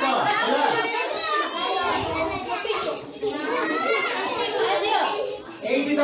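A roomful of children talking and calling out at once, many high voices overlapping.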